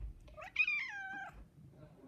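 A tabby house cat meows once, a single call of about a second that rises briefly and then falls in pitch.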